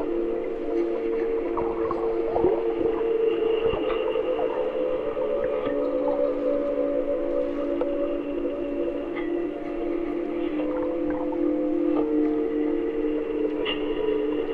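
Ambient music: held drone chords that shift pitch twice, layered with processed underwater hydrophone recordings of river water, giving short sliding tones about two seconds in and scattered faint clicks.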